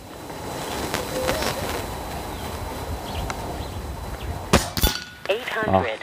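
Steady outdoor background hiss, then a Reximex Throne PCP air rifle fires a single .22 pellet with a sharp crack, and about a third of a second later the pellet strikes the steel target plate with a metallic clang.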